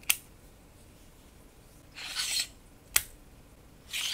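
Metal drive tray and outer shell of a UGREEN NVMe M.2 enclosure being handled and slid together: a sharp click at the start, a short scraping slide about two seconds in, and another sharp click about three seconds in.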